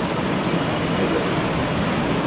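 Steady rushing noise with no speech in it, fairly loud and unchanging throughout.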